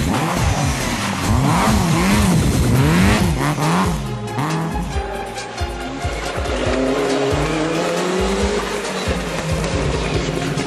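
Rally car engine revving hard, its pitch swinging quickly up and down as the car brakes, blips the throttle and changes gear through a bend. About five seconds in, a second rally car's engine takes over, accelerating with a steadily rising pitch.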